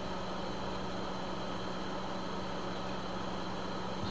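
Steady background hum and hiss with a low constant tone, unchanging throughout; no distinct event.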